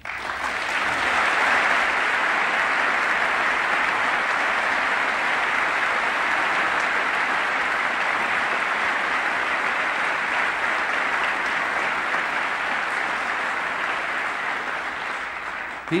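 A large audience applauding. The clapping swells over the first second or two, holds steady, and eases slightly just before it stops.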